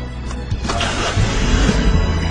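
Background music over a car engine starting: a click about half a second in, then a rush and a steady low rumble as the engine runs.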